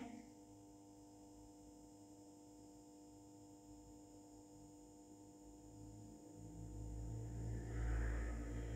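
Near-silent room tone with a faint steady hum, then a low rumble that swells over the last two seconds.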